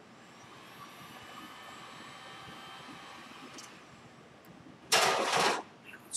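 A faint whine for the first few seconds, then a loud burst of hissing noise lasting about half a second near the end.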